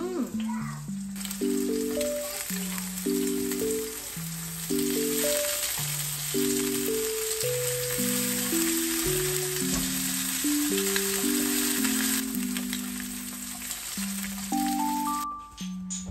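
Slices of Spam sizzling as they fry in a stainless-steel frying pan, a steady hiss that starts about a second in and stops abruptly near the end. Cheerful background music of plinking notes plays over it.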